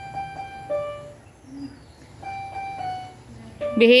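Electronic keyboard in a piano voice, played one key at a time. The same note is struck several times in quick succession and then a lower note sounds; after a pause of about a second, the repeated note comes back.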